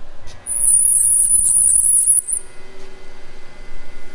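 A CWT crankshaft balancing machine starts spinning a small-block crankshaft fitted with bob weights up to its 500 RPM balancing speed. A high-pitched whine with a few clicks lasts about two seconds as it spins up, then gives way to a steady hum.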